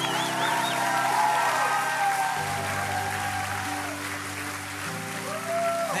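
Congregation applauding over soft worship-band music, the band holding sustained chords that change about every two and a half seconds.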